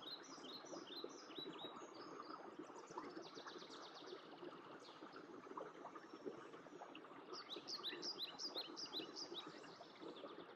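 Faint birdsong outdoors: runs of short, quick, falling chirps at the start and again from about seven seconds in, over a faint steady background.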